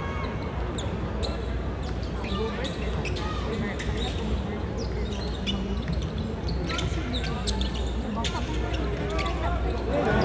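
A basketball being dribbled on a hardwood arena court, heard from the stands, with scattered short knocks from play over steady crowd chatter.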